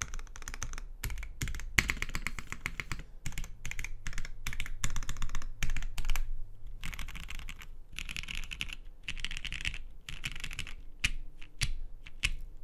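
Mechanical keyboard typing: a Matrix Falcon 6xv2.0 with an FR4 half plate, Cherry-topped Tangies switches lubed with Krytox 205g0, and GMK keycaps. Separate keystrokes give way to fast runs of typing about two seconds in and again in the second half.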